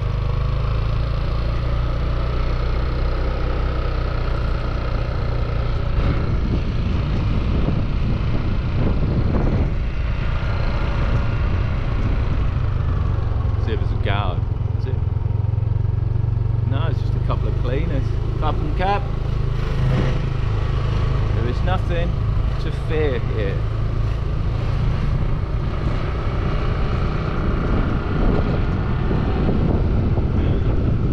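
Small motor scooter engine running steadily while riding, with wind and road noise on the microphone.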